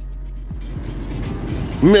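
Background music with a fast, even high ticking over a steady low hum and faint rumble, as a man starts speaking near the end.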